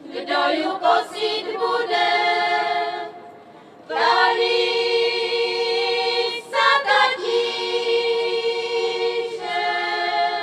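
A women's folk choir singing a Moravian folk song unaccompanied, in sustained phrases with a pause for breath about three seconds in and a brief break near seven seconds.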